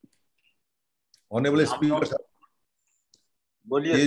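Speech only: a man says two short phrases, the first about a second in and the second near the end, with silence around them.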